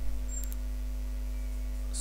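Steady low electrical hum, with one faint short click about half a second in.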